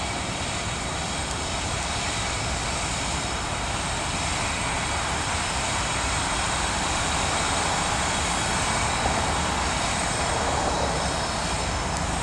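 Diesel freight locomotives, a CSX lead unit with two Union Pacific SD70-series units trailing, running under power as they roll slowly toward and past. It is a steady engine drone that grows a little louder as they approach.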